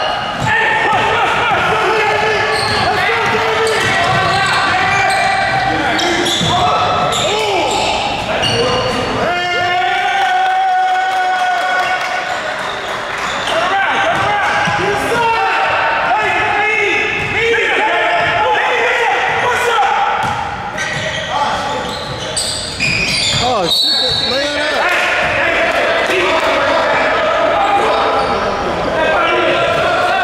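Indoor basketball game: a ball bouncing on the court amid players' voices and calls, carrying through a large gym hall.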